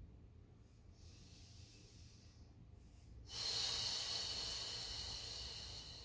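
A woman's controlled breathing during a Pilates exercise: a faint breath, then a louder, longer breath lasting about three seconds from about halfway through.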